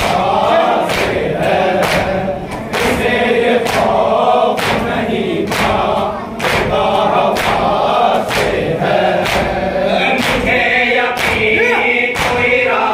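Men's voices chanting a noha lament together in unison, over a steady beat of open palms striking chests (matam), a little under one stroke a second.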